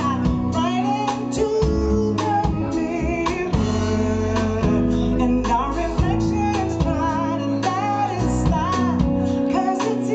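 Live band music: a woman singing lead, holding wavering notes, over guitar and bass.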